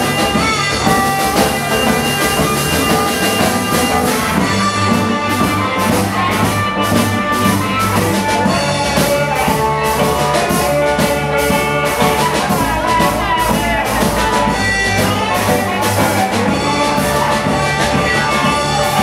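Live blues shuffle played by a small band: an amplified harmonica takes the lead with long, bending notes over hollow-body electric guitar, upright double bass and drum kit.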